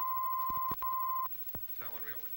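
Steady, high-pitched test tone of the kind laid on film leader, held unchanging with a brief break about three-quarters of a second in, then cut off suddenly about 1.3 s in, with a few scattered film-crackle clicks. A voice begins near the end.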